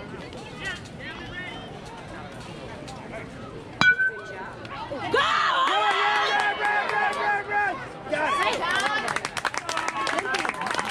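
A metal youth baseball bat hitting the ball about four seconds in: one sharp ping that rings briefly. Spectators then shout and cheer for a few seconds, with crowd chatter around it.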